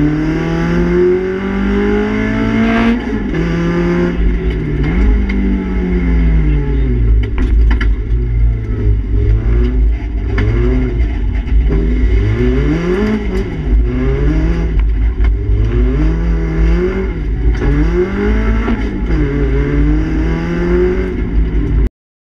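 Renault Clio Sport rally car's four-cylinder engine heard from inside the cabin, revving up and falling off again and again as the car accelerates and slows through a run of bends, with a long climb in revs over the first few seconds. A few brief clicks and knocks come through around the middle.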